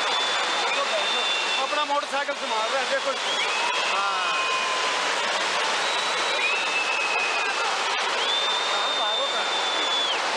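A landslide: rock and earth pour down a steep hillside in a continuous rushing noise. People's voices come through about two to four seconds in, and several long, high whistles sound over it.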